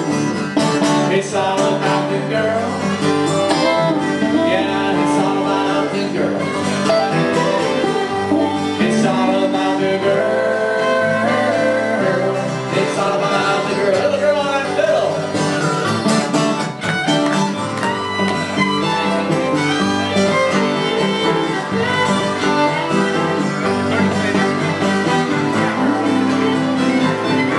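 Live acoustic rock band playing an instrumental passage: a fiddle carries the melody over strummed acoustic and electric guitars and piano, steady and loud.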